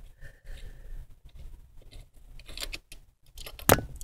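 Small clicks and scrapes of hands working a fastener and plastic parts loose from a 1988 Honda Civic's ignition switch under the steering column, with one loud sharp click near the end.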